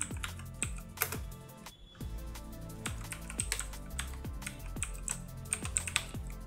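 Computer keyboard clicking through a run of keystrokes as a shell command is typed, over electronic background music with a beat of about two kicks a second.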